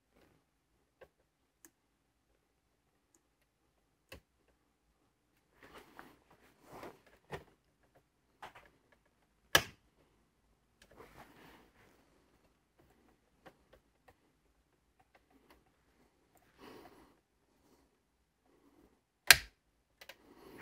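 Plastic push-pin fasteners on a Mini Cooper's lower dash trim being pressed in with a pick tool: scattered faint clicks and short rustles, with two sharp clicks, one about halfway through and one near the end.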